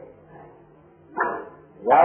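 A quiet pause with faint hiss, broken a little after a second in by a single short dog bark.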